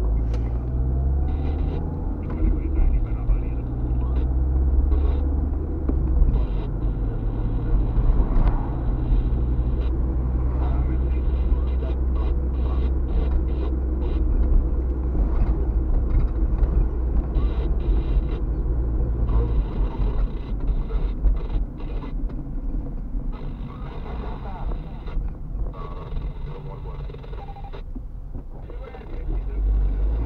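Steady low rumble of a car's engine and tyres heard from inside the cabin while driving, easing somewhat past the middle.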